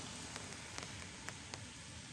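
Light rain falling, a steady hiss with scattered sharp ticks of drops striking the umbrella overhead.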